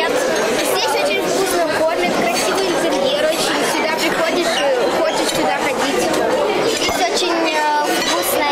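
Children's voices chattering and talking over one another, steady throughout, in a busy room.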